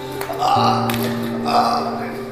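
Background film music with sustained low notes, over a man's throaty choking sounds, twice: about half a second in and again near the end.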